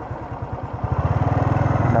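Motorcycle engine running while under way, its firing pulses growing louder and quicker from about a second in as the throttle opens.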